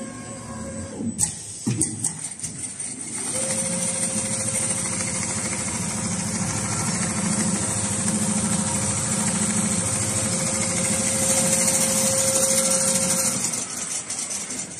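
Richpeace two-head computerised sewing machine running at speed, a steady mechanical rattle with a held whine. It starts about three seconds in and stops shortly before the end, after a few clicks and knocks.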